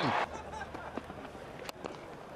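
Stadium crowd noise, then near the end a single sharp crack of a cricket bat hitting the ball on a big lofted shot.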